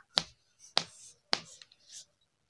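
A hand slapping three times, sharp and evenly spaced about half a second apart.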